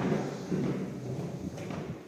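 Footsteps of hard-soled shoes on a bare wooden plank floor, uneven steps as someone walks through an empty house.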